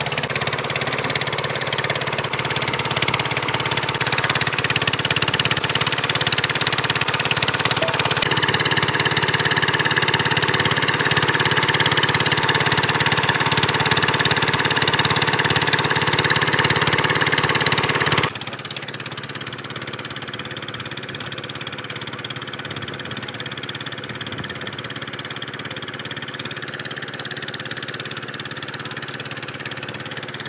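Stationary engine belt-driving a concrete mixer, running steadily at a constant speed. About 18 seconds in, the sound drops abruptly to a quieter steady engine hum.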